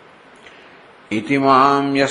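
Faint hiss, then about a second in a man's voice starts chanting a Sanskrit verse in a steady, held recitation tone.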